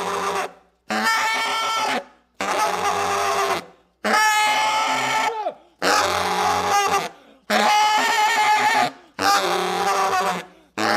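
Solo baritone saxophone in free improvisation: a string of about seven long held notes, each a second or so, with short breaks for breath between them. The pitch mostly holds steady, and one note bends down as it ends about halfway through.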